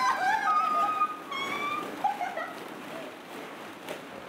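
Several women squealing and laughing in high voices while throwing plastic balls around in a ball pit, with a soft rustle of the balls; the squeals die down through the second half.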